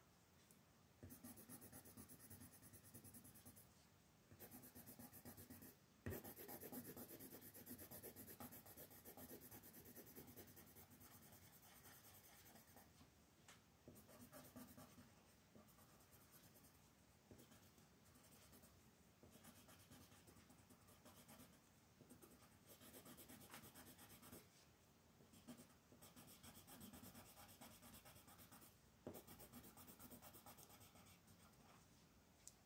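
Faint colored pencil scratching on coloring-book paper in runs of rapid shading strokes, broken by short pauses between runs.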